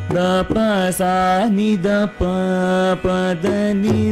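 Carnatic vocal music in raga Ananda Bhairavi: a male voice sings held notes that bend and slide, with violin accompaniment and a few mridangam strokes.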